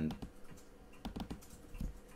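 Scattered clicks of a computer mouse and keyboard, a few short taps in small clusters.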